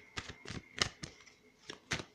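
Tarot cards being shuffled and handled to draw a clarifying card: an irregular series of crisp card clicks and flicks, loudest a little under a second in.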